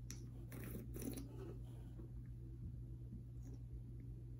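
Faint rustling and a few soft clicks of a paper popcorn box being picked up and handled, most of it in the first second or so, over a steady low room hum.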